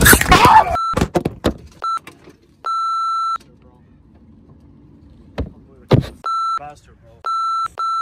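A loud, brief commotion in the first second as the iguana lunges and bites, followed by a few sharp knocks and then several censor bleeps, short steady beeps laid over swearing.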